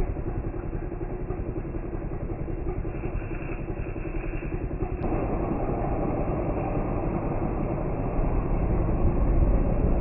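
An engine running steadily, getting louder about halfway through.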